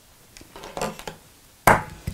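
Soft handling of fabric and thread, then a single sharp knock near the end as metal dressmaking scissors are picked up off the table.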